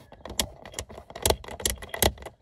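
A few irregular sharp clicks and light rattles, about four strong ones, from handling in the cab.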